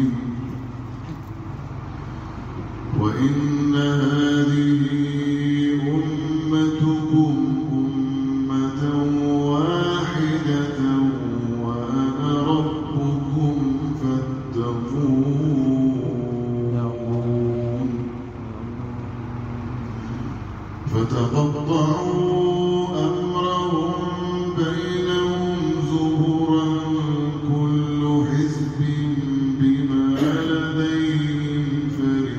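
Male voices chanting a Sufi devotional hymn, with long, ornamented melodic lines held over a steady low drone. The chanting drops softer about a second in and again around eighteen seconds, and swells back a few seconds later each time.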